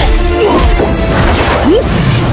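Film fight-scene soundtrack: music with hitting and crashing sound effects from a martial-arts sword fight, and short whooshing sweeps.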